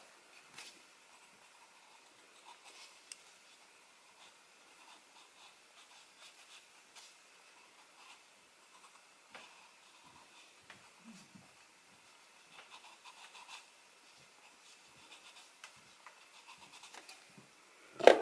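Near silence, with faint, irregular scratching and rubbing of a charcoal pencil on paper.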